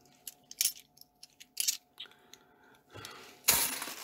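UK £2 bimetallic coins clicking against one another as they are handled and sorted by hand, a few short separate clinks. About three and a half seconds in, a louder rustle of the plastic coin bag takes over.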